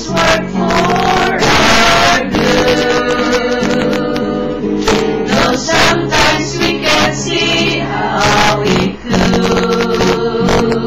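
A small group of voices, mostly women with a young man, singing a song together to an acoustic guitar being strummed.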